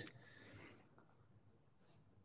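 Near silence: room tone during a pause in speech.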